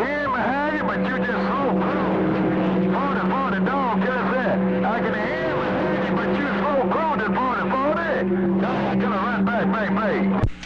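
CB radio receiving another station's voice transmission, garbled and hard to make out, over steady humming tones. The voice runs on without a break.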